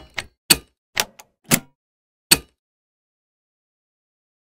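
Animated-logo sound effect: a quick run of short, sharp clicks and hits, about half a second apart, ending about two and a half seconds in.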